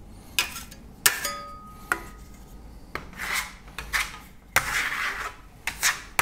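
Steel Venetian trowel scraping across a sample board in several sweeping strokes, spreading a thin layer of matte pearlescent decorative coating; the strokes come in the second half. Earlier there are a few sharp knocks, one followed by a brief metallic ring.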